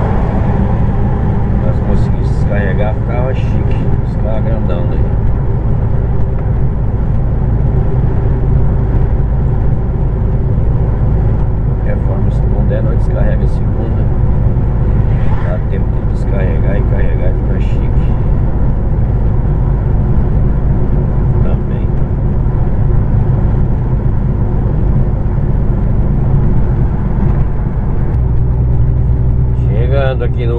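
Heavy truck's diesel engine running steadily under the cab at cruising speed, a constant low drone with road noise; its low hum changes near the end. Faint voices come through in places.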